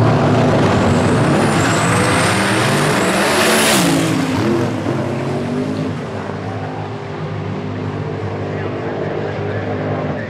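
Two outlaw drag race cars, one an Outlaw 10.5 Ford Cortina, launching off the start line at full throttle and racing down the strip. The engines are loud, peak around four seconds in with a dip and climb in pitch, then fade as the cars pull away.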